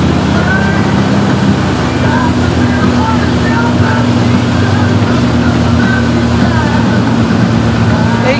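Ski boat engine running steadily under way, pulling a wake surfer, its pitch stepping up slightly about two seconds in, with rushing wind and water noise over it.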